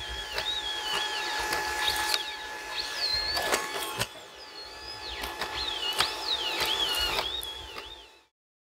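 Hydraulic Atlas humanoid robot running on grass: a steady mechanical whine with thuds of its feet striking the ground, while birds whistle and chirp around it. The sound fades out at the end.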